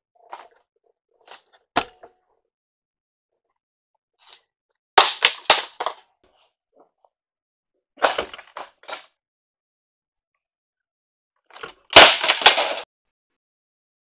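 Hard plastic heater and air-conditioning box knocking and scraping against the car's bodywork and fittings as it is worked loose and pulled out. The clatter comes in short bunches of sharp knocks, a small one early, then about five, eight and twelve seconds in, the last the loudest.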